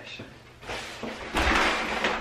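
An interior door being opened: faint handling noise, then a loud half-second rush of noise with a low rumble in the second half.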